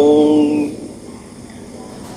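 A voice chanting Vietnamese Buddhist verse holds the last note of a line, which fades out under a second in. A pause with only faint background noise follows.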